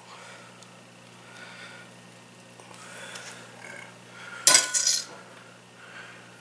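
Faint rustling and handling of raw bacon strips and their plastic package tray, then a brief loud clatter about four and a half seconds in as a large kitchen knife is set down on the tray.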